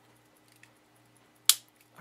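A single sharp click about one and a half seconds in: the stiff stem of a 1904 Elgin stem-set pocket watch snapping out into the hand-setting position.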